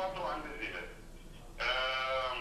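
A person's voice speaking, then a long held vowel-like sound starting about one and a half seconds in.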